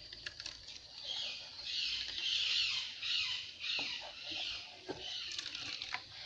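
A hand scraping and rubbing a crumbly food mixture around a stainless steel plate, in uneven scratchy strokes with a few small clicks against the metal.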